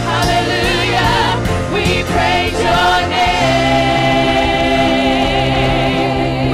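Live gospel worship song: several singers on microphones over a band, voices with wide vibrato, settling into a long held note about halfway through.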